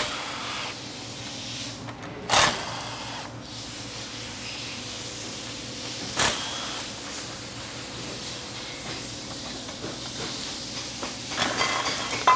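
Milwaukee Fuel cordless driver running in short bursts, spinning out the 13 mm extension-housing bolts of a Ford AOD transmission. There are about three separate bursts a few seconds apart, then several quick ones close together near the end.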